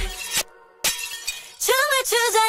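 Pop music breaks off with a short, sharp crash like breaking glass, a transition sound effect, and a brief near-quiet gap. A sung phrase starts near the end.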